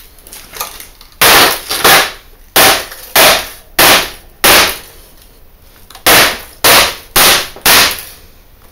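Hammer blows on the plastic back casing of an HP LCD monitor lying face down: ten sharp, loud strikes at about two a second, with a short pause after the sixth.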